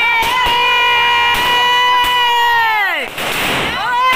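Diwali fireworks fountain giving off a loud steady whistle that drops steeply in pitch and dies about three seconds in, then starts again near the end.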